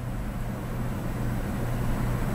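Steady low background hum with no speech.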